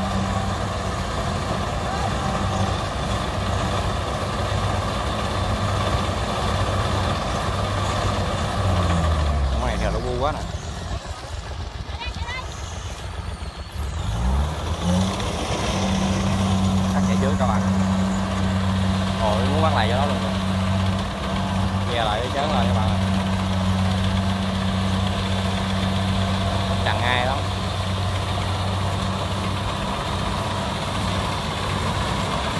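Diesel engine of a rice-field machine running steadily. A little before the midpoint it slows with a falling pitch and goes quieter, then revs back up a few seconds later and runs steady again.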